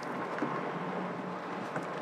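Steady wind noise on the microphone over water lapping around a small boat.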